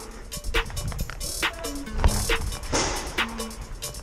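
Background music with a steady beat and held bass notes.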